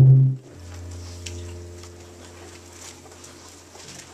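Electric keyboard in a small church sounding a chord at the very start, then a single held low bass note that slowly fades away.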